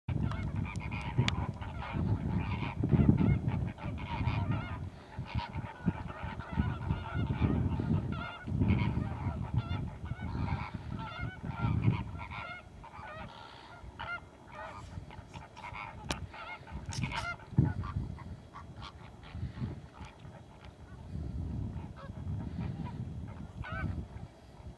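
A flock of greater flamingos calling: many goose-like honks and gabbling calls overlapping without pause, with bouts of low rumbling underneath.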